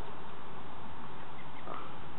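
Steady outdoor background noise on a camcorder microphone, with a brief faint call from someone far off about a second and a half in.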